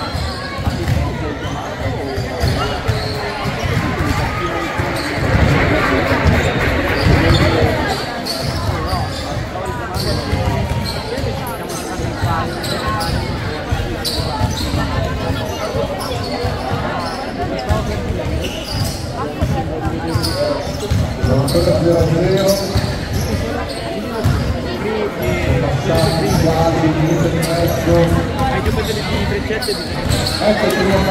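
Basketball bouncing on a wooden gym floor during play, with steady chatter from players and spectators around the court.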